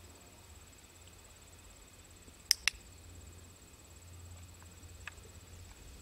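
Two sharp clicks in quick succession about two and a half seconds in, the press and release of a dog-training clicker, over a steady faint high-pitched tone in the background.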